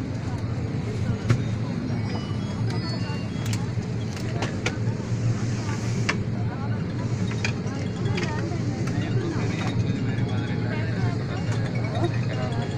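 Steady low hum of an airliner cabin, with passengers talking and a few clicks and knocks, one sharp one about a second in.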